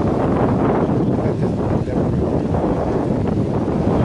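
Strong wind buffeting the camera's microphone: a steady, loud rushing rumble with no distinct events.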